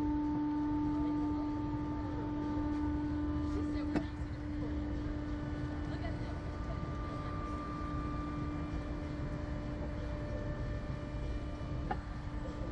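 Steady mechanical hum from a slingshot ride's machinery, a low drone with fainter higher tones held at one pitch, over a low rumble. A single sharp click about four seconds in.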